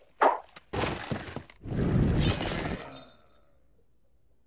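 A short thunk, then glass breaking and crashing in two bursts that fade out about three seconds in, leaving near silence.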